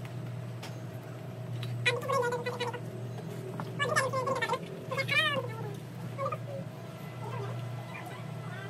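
Several short, high-pitched calls that rise and fall in pitch, a few seconds apart, over a steady low hum.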